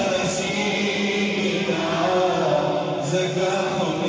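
A man's voice chanting a devotional recitation into a microphone, in long held notes that rise and fall.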